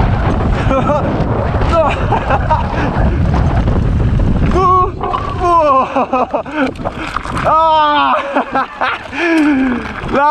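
Wind rushing over the microphone and tyre rumble from a mountain bike riding fast down a dirt trail. From about halfway, the rumble drops and a man's voice calls out several times in drawn-out, wordless shouts that rise and fall in pitch.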